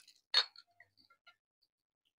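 A few sharp clicks from eating by hand at a table with glass dishes: one loud click about half a second in, then several faint ticks.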